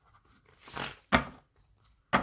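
A deck of Lenormand cards being handled and shuffled: a short papery rustle, then a sharp snap of cards about a second in.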